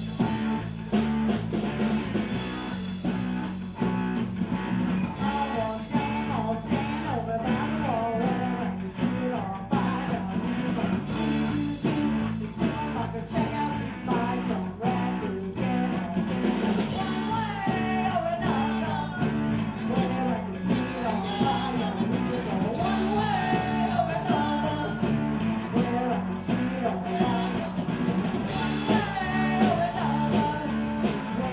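Live rock band playing through a PA: electric guitars, bass, keyboard and drums driving a steady beat, with a lead vocal over it.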